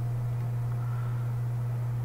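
A steady low hum with a faint hiss underneath, unchanging throughout; no distinct events.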